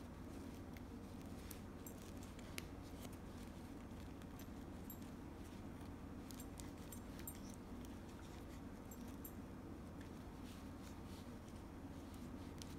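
Faint rustling and small clicks of satin ribbon being handled and fluffed into shape by fingers, with one sharper click a little over two seconds in, over a steady low room hum.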